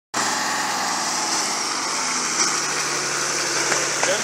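Off-road 4x4 engine running steadily at an even pitch.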